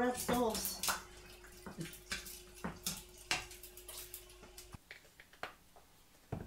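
Kitchen clatter: a string of light knocks and clinks from pans and utensils being handled at the hob, over a faint steady hum that cuts off abruptly near the end.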